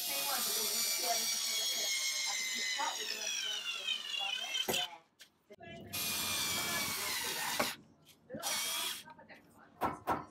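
Cordless drill/driver running in three bursts as it drives screws into wall plugs in a brick wall. The first burst lasts about four and a half seconds, its pitch dropping toward the end as the screw tightens. The second lasts about two seconds and the third is brief.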